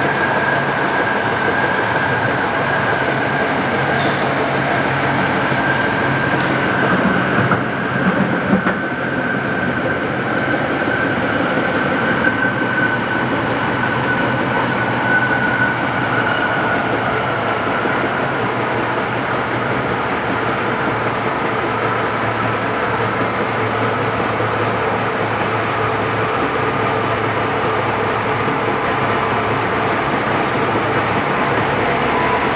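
Tatra T3 tram running, heard from inside the passenger saloon: a steady rumble from the wheels and running gear. Through it runs a whine that slowly falls in pitch over the first half, and a few short knocks come about a quarter of the way in.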